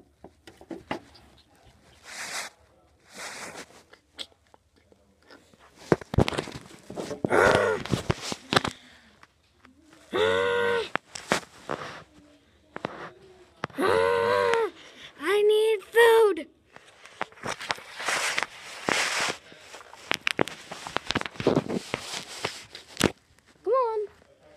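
A person's voice making wordless vocal sounds in several short stretches, the loudest about ten and fourteen to sixteen seconds in, between scattered rustling and handling noises.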